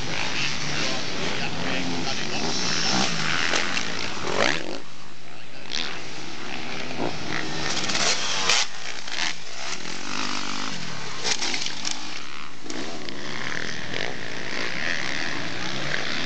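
Motocross bike engines revving hard and easing off as riders take the jumps, the pitch sweeping up and down. One engine rises steeply about four seconds in, then drops away briefly.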